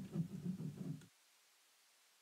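A man's faint low voice without clear words for about the first second, then the sound cuts off abruptly to dead silence.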